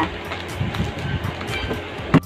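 Scissors cutting through bubble wrap and packing tape on a cardboard parcel, the plastic crinkling irregularly, over background music.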